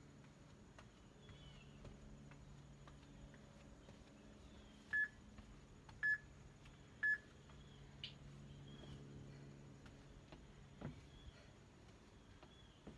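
Three short electronic beeps, one a second apart, from a workout interval timer counting down to the start of the next exercise. A soft thump follows near the end.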